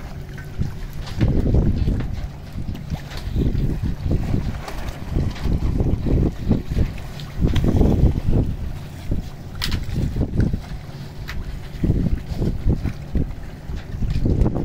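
Wind buffeting the microphone on open water, a low rumble that swells and fades in uneven gusts, with a sharp click about ten seconds in.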